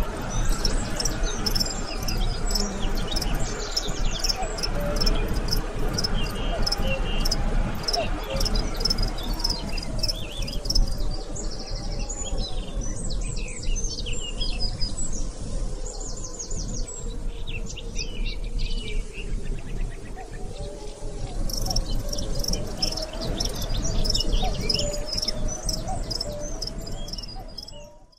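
Outdoor ambience of small birds chirping and insects calling: many short, repeated high chirps over a steady low background rumble.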